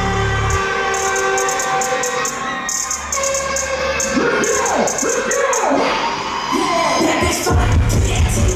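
Live hip-hop performance through a concert PA: the heavy bass drops out about half a second in, leaving hi-hats, a held synth line and voices sliding in pitch, then the bass comes back in near the end.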